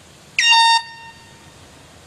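One short, loud blast of a handheld air horn, about half a second long, swooping quickly up to a steady high pitch: the start signal for the first leg of the relay.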